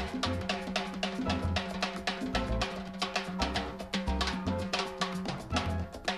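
Live salsa band with a drum kit solo to the fore: fast snare and bass drum strokes over a held bass note and the band's backing.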